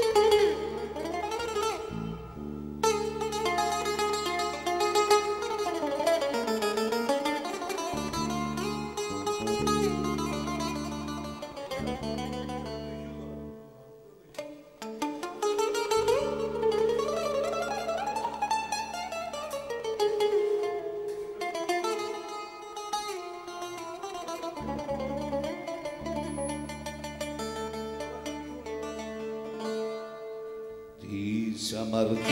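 Live Greek folk band playing an instrumental passage: a plucked long-necked lute carries running melodic lines over steady bass and guitar. The music drops away briefly around the middle, then picks up again.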